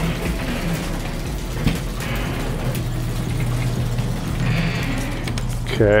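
Overhead sectional garage door going up, driven by an electric opener: a steady motor hum with mechanical rattling from the door's tracks and panels.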